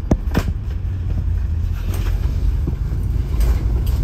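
Cabin noise on the upper deck of a moving double-decker bus: a steady low engine and road rumble, with two sharp knocks or rattles just after the start.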